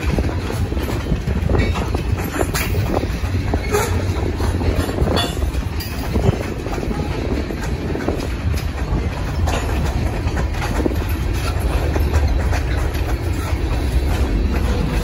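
Freight cars, covered hoppers and then tank cars, rolling past: a steady rumble of steel wheels on the rails, with a sharp click or clack every few seconds.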